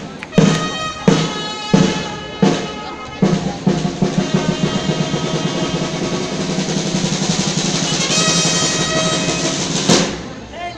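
Dance drum played in single strong beats about once every 0.7 seconds, then breaking into a fast continuous drum roll from about three seconds in that runs on to the end.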